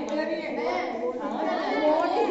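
Several voices talking over one another in Hindi: mixed chatter.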